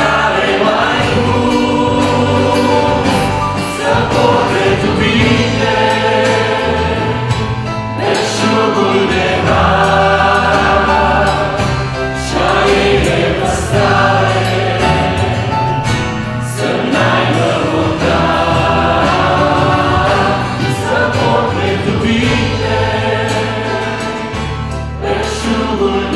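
A live worship band playing a Christian song: mixed male and female voices singing together, with acoustic guitar, electric bass and drums.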